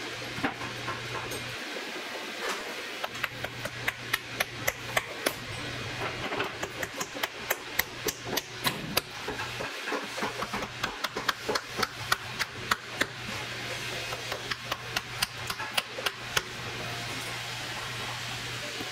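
Hammer tapping small nails into a stacked leather heel on an upturned work boot: a quick run of light, sharp taps, two or three a second, starting a few seconds in with a short pause partway.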